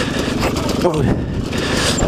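KTM 125 SX two-stroke single-cylinder dirt-bike engine running as the bike is ridden slowly through mud, heard close from the rider's helmet camera, with a short exclamation from the rider just under a second in.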